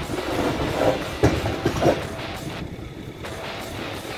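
A heavy tractor-trailer rolling slowly over a steel bridge, its deck clanking and rattling under the wheels, with three loud knocks between about one and two seconds in.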